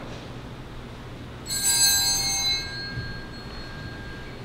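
A small altar bell rung, its bright ring starting suddenly about one and a half seconds in and fading over about a second, with a faint tone lingering.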